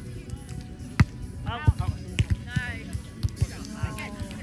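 A volleyball struck by hand during a rally: one sharp smack about a second in, followed by a few lighter knocks.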